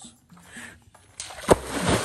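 A person jumping into a river: a sharp, loud splash about a second and a half in, then the rushing sound of spray falling back onto the water.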